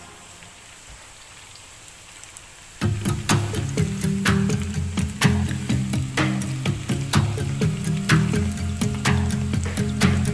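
Faint sizzle of sliced onions frying in oil, then background music with a steady beat comes in about three seconds in and plays over it.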